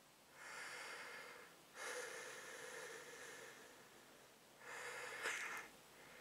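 A person breathing through a thin cloth face mask. There are three slow, separate breaths, and the second one is the longest.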